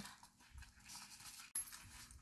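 Faint rustling of a fabric armband being handled and strapped onto an arm, with one sharp click about one and a half seconds in.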